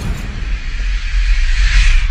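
Logo-intro sound effect: a low rumble trailing off a boom, with a hissing whoosh that swells louder toward the end.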